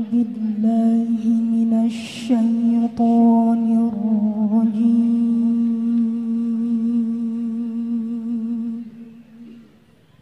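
A female Quran reciter (qoriah) chanting in tilawah style. She holds one long, drawn-out note with vibrato and melodic turns. There is a brief break about two seconds in before the note resumes, and it dies away shortly before the end.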